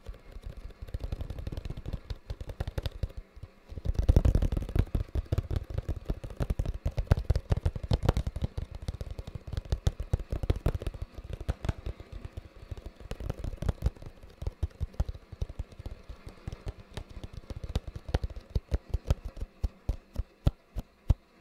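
Fingers tapping rapidly and irregularly on a small cardboard box held close to the microphone, many taps a second with a low, hollow thud to each. The tapping gets heavier and denser about four seconds in, then thins out near the end.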